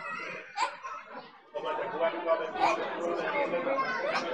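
Chatter of several people talking at once, with some laughter.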